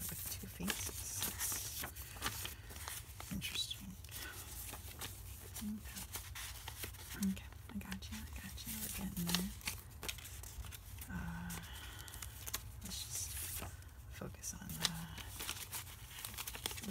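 Overhand shuffling of a handmade tarot deck printed on thin printer paper, the cards giving a continuous run of quick papery rustles and flicks.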